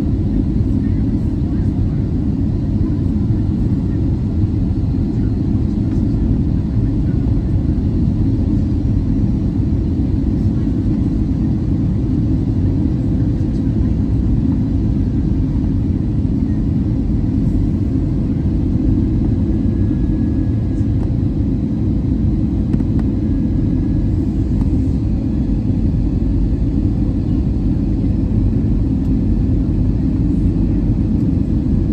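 Cabin noise of an Airbus A320-214 on final approach, heard from a window seat by the CFM56-5B engine: a steady, loud, deep rumble of airflow and engines with a faint steady hum above it.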